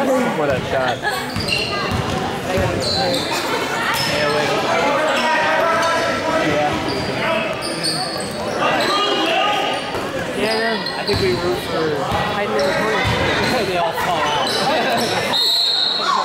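Basketball bouncing on a hardwood gym court during play, with spectators talking close by throughout and the sound echoing in the large gym.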